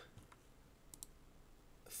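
Near silence: room tone, with two faint quick clicks close together about a second in.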